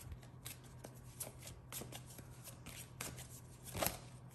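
A tarot deck being shuffled by hand: a run of soft, irregular card clicks and flicks, busiest near the end.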